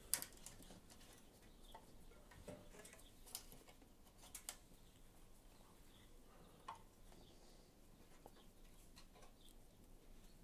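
Near silence with a few faint clicks and rustles as old boot laces are threaded around a plastic stand and pulled to tie it down. The sharpest click comes right at the start.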